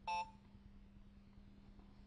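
A single short electronic beep from a handheld talking learning toy, heard once right at the start. A faint steady low hum sits underneath.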